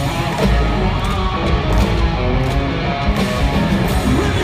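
Live country-rock band playing loudly through an arena sound system, electric guitar to the fore over a steady drum beat.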